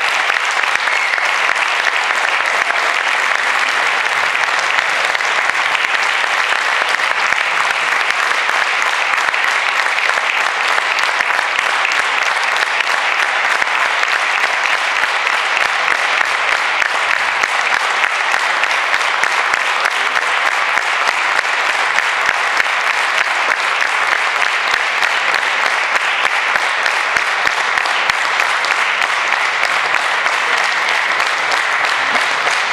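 Audience applauding, dense and steady.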